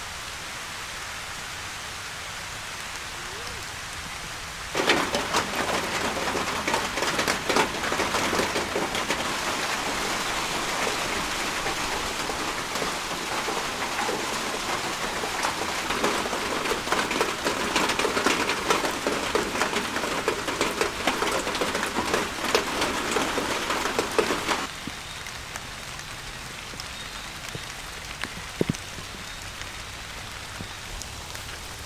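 Rain falling: a steady hiss that turns heavier about five seconds in, with a dense patter of drops. About twenty seconds later it drops back to a steady hiss.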